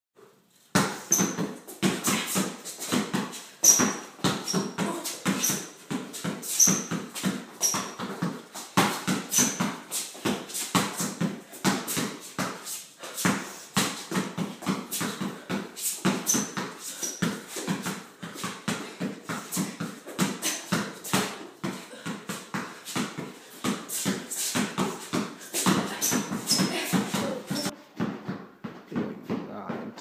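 A basketball dribbled hard and fast on a concrete garage floor, a quick, uneven run of bounces several times a second in ball-handling drills, starting about a second in.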